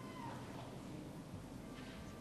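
Faint room tone with a low steady hum, and a short squeak that rises and falls in pitch at the very start.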